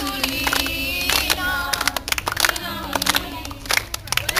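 A group of voices singing together, with many hands clapping along in uneven, scattered claps.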